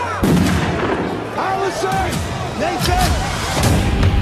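Film trailer sound mix of sharp bangs and crashes with people shouting or screaming, over a deep rumble that builds near the end.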